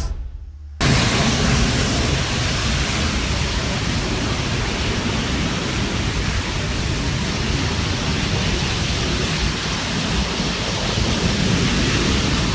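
Steady rushing noise with a low rumble, cutting in suddenly about a second in: a city bus burning, recorded on a phone, the blaze blended with wind on the microphone.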